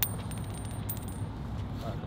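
A coin tossed for a coin flip: a sharp metallic ping, then a high, thin ring that fades out after a little over a second.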